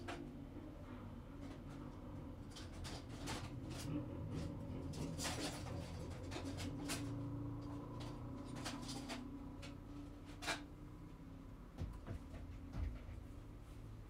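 Kitchen handling sounds: a scatter of sharp clicks and knocks, like cupboard doors and dishes being handled, over a steady low hum, with two dull thumps near the end.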